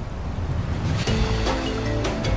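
Rushing stream water, joined about a second in by background music of held notes with sharp percussive ticks.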